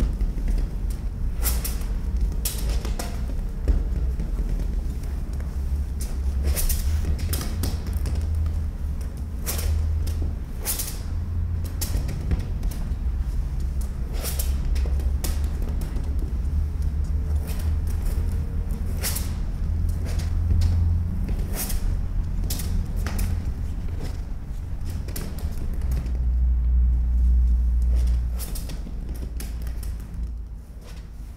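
Experimental live sound performance: a deep low rumble that swells and eases, overlaid with scattered sharp clicks and crackles, dropping away near the end.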